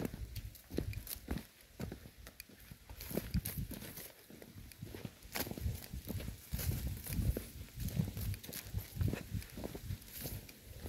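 Footsteps of a person walking over dry ground and grass, a run of irregular dull thuds with small clicks.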